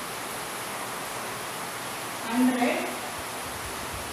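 Steady, even background hiss, with a short vocal sound from a woman about two and a half seconds in.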